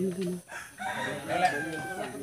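A rooster crowing: one long call starting about a second in, its pitch held and then sinking slightly toward the end.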